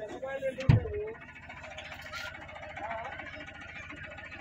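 Vehicle engine idling with a steady low rumble, heard from inside the cabin, with one heavy thump a little under a second in.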